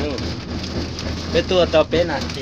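Steady running noise inside a moving cable-car cabin: a low hum under an even hiss, with a person's voice briefly near the end.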